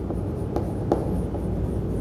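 Chalk writing a word on a chalkboard: light scratching with a couple of faint taps about halfway through, over a steady low background hum.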